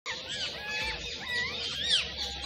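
Small birds chirping: a run of short, high whistled chirps that rise and fall in pitch, the loudest just before the end.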